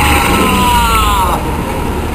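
Dramatic sound effects from a TV serial's soundtrack, heard through a television's speaker: two or three whistling tones falling in pitch together and fading out about a second and a half in, over a low rumble.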